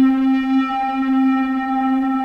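Therevox ET-4.3 synthesizer holding one steady square-wave note, run through a delay/reverb pedal into an OCD distortion pedal, which gives the single note a little hair of distortion.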